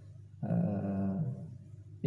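A man's drawn-out hesitation sound "eh", held for about a second into a handheld microphone, slightly falling in pitch.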